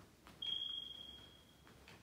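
A single high-pitched beep that starts suddenly and fades away over about a second.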